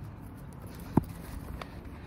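Footsteps on grass as someone jogs, with one sharp thump about a second in and a few fainter knocks after it, over a low steady background rumble.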